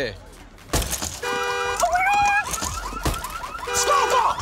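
A sharp smash about three-quarters of a second in, then a car alarm goes off. It cycles from a steady multi-tone blare to a rising wail, then fast repeating whoops, and back to the steady blare near the end.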